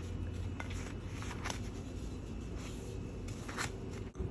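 Soft rustles and a few light taps of toasted hot dog buns being picked up from a griddle and set down on a plate, over a low hum that fades about half a second in.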